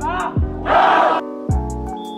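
A short, loud group shout from a sports team huddled together, about a second in, over background music with a low drum beat.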